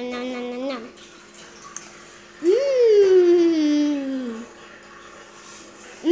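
A child's voice: a held, humming 'nom' tails off in the first second. About two and a half seconds in comes a drawn-out wordless 'mmm' that swoops up and then slides slowly down in pitch for about two seconds.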